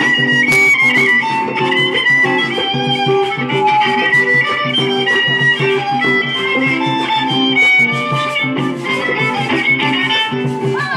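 Live violin playing a Panamanian melody over a strummed string accompaniment, the notes held and sliding from one to the next.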